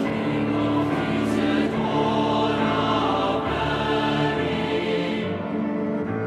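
Choir singing a slow hymn in long, held chords.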